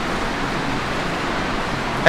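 Steady, even background noise: a hiss with a low rumble underneath, with no distinct events.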